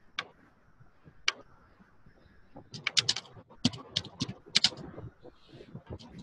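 Computer keyboard being typed on: a lone keystroke near the start and another about a second in, then a quick run of keystrokes in the middle.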